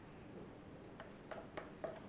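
A few faint, light clicks in the second half: a wooden stirring stick tapping against a plastic pouring cup while melted soap base is poured slowly into a silicone mold.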